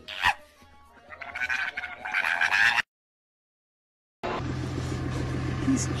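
A sharp knock, then a rising, noisy wash of sound that cuts off suddenly, followed by about a second and a half of silence. A steady low engine hum from heavy equipment then starts.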